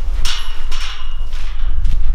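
Steel tube livestock gate being swung shut, its hanging chain rattling and the metal giving a brief ringing clank about a quarter second in that fades within a second, over a low rumble.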